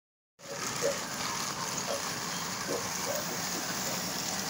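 Battery-powered Trackmaster toy trains running on plastic track: a steady whir of the small motors and gears along with wheel noise on the rails.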